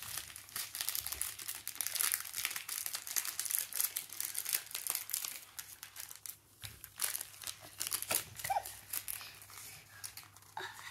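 Small clear plastic bag of glitter crinkling as it is handled and squeezed in the hands: a dense crackle for the first six seconds or so, then quieter, scattered rustles.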